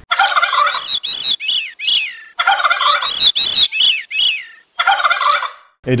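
Bird calls: rapid series of short rising-and-falling notes in three bursts, the first two about two seconds long and the last about one second.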